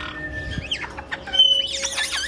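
Caique parrots calling: a rapid run of short squawks and whistles that sweep up and down in pitch, with a brief steady high whistle about halfway through.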